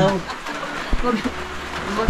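A bird calling under the room noise after a short laugh, with a single sharp knock about a second in.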